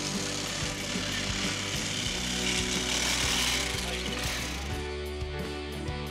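Enduro dirt bike engine revving hard under load as it climbs a steep trail, with background music over it. About four seconds in the engine drops away and the music carries on alone.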